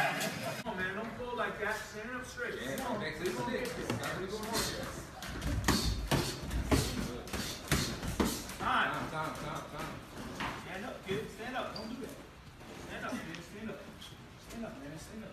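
Boxing gloves landing in a sparring exchange: a run of sharp smacks and thuds about five to eight seconds in, over indistinct voices.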